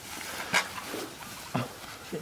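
Two short bursts of stifled laughter, about a second apart, from an actor who cannot keep a straight face.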